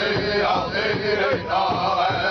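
Powwow drum group singing together: men's voices in a high chant over a steady, even beat on a large powwow drum struck by several drummers at once.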